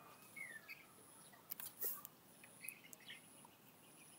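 Quiet room tone with faint bird chirps in the background and a couple of faint clicks about a second and a half in.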